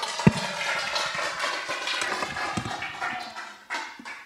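Audience applauding after a talk, fading out near the end. A single thump about a quarter second in, as the handheld microphone is set down.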